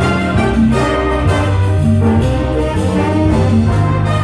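Jazz big band playing live: saxophones and brass sounding held chords together over piano and a steady low bass line.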